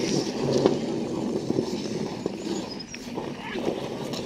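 Ice skate blades gliding and scraping over rough natural lake ice: a steady rumbling scrape with scattered sharp clicks and knocks.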